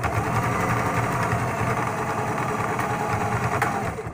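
Electric sewing machine running at a steady speed, stitching through fabric, then stopping near the end.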